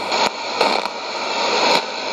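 Shortwave band noise from a Sony ICF-2001D receiver tuned to 15550 kHz in AM: a steady static hiss with a few sharp crackles, and no programme audible.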